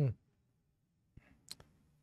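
A light click of the pool cue's tip on the cue ball about a second in, then a sharper click of the cue ball meeting an object ball half a second later, on a soft safety shot.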